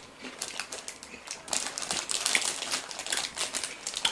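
A paper snack bag rustling and crinkling in the hands, mixed with close-up chewing of crisp fresh apple slices. It is a quick run of small, crisp clicks and crackles that gets busier about a second and a half in.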